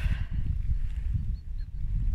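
Low, irregular rumbling and buffeting on a handheld phone's microphone as it is swung around outdoors.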